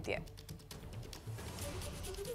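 Quiet news-bulletin background music: a soft low pulse under a regular ticking, typewriter-like beat, with the end of a voice at the very start.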